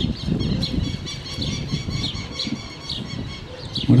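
Irregular rumbling and knocking on the microphone as it is taken from its stand, with small birds chirping repeatedly in the background.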